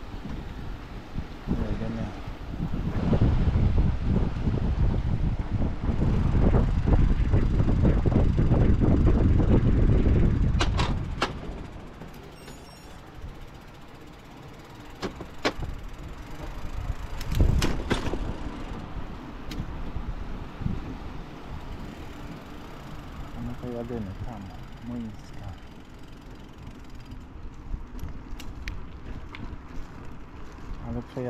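Bicycle riding noise: a low rumble of wind and rolling tyres, loud for about the first ten seconds and then quieter, with a few sharp clicks and knocks from the bike, the loudest a little past halfway.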